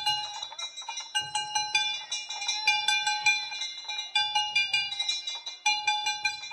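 Danjiri festival music: metal hand gongs struck in a quick, steady clanging rhythm, with short rolls on a low drum about every second and a half.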